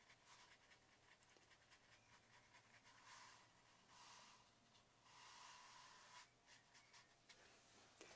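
Near silence, with a few faint soft swishes of a brush working wet watercolour paper.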